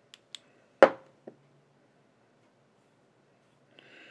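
A few sharp clicks from handling at a fly-tying vise: two faint ones, then one loud click with a short metallic ring about a second in and a smaller one just after.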